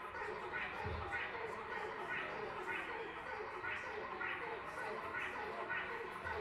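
A quiet electronic synth blip repeating evenly about twice a second, under crowd chatter.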